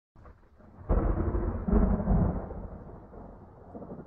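Thunder-like low rumble as the track's intro, swelling about a second in and again shortly after, then slowly fading out.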